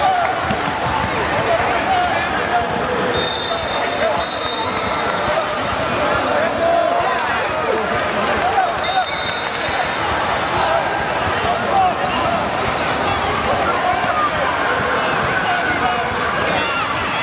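Basketball being dribbled on a hardwood gym floor during a youth game, under a steady hubbub of spectators' and players' voices and calls.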